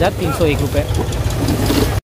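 A motor vehicle engine idling steadily with a low rumble, under nearby voices.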